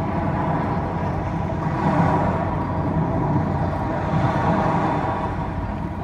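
Loudspeaker soundtrack of an outdoor projection-mapping show: a deep, steady rumble with sustained tones held over it.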